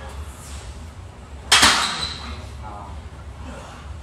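One sharp metallic clank of a loaded barbell and its iron plates, about a second and a half in, ringing briefly as it dies away.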